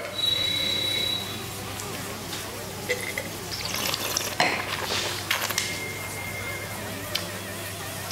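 Wine taster drawing air through a mouthful of white wine to aerate it: hissy slurps, with a thin whistle at the start. The wine glass is set down on the table with a light knock partway through.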